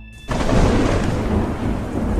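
Thunder sound effect: a clap of thunder that breaks in suddenly a moment in and rolls on as a loud, deep rumble.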